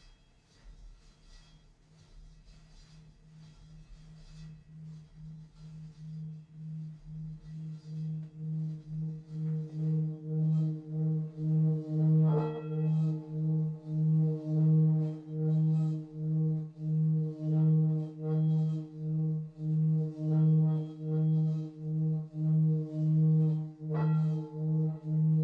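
Large singing bowl rubbed around its rim with a wrapped wooden mallet, its low hum swelling from faint to loud over about ten seconds and then holding with an even waver, about one pulse a second. A light click of the mallet on the rim about halfway through.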